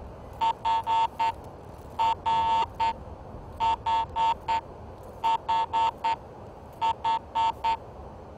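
Garrett AT Pro International metal detector sounding five bursts of short beeps at one steady pitch as its coil sweeps over a rusty iron nail. Turned perpendicular to the DD coil's centre line, the nail gives a clean tone and reads up to 33, like a good non-ferrous target.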